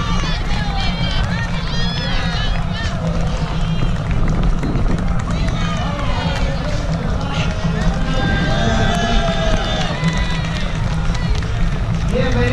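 A runner moving fast with a body-worn camera, a heavy steady rumble of movement on the microphone, with spectators' shouts and a voice and music over a loudspeaker coming from the race finish area.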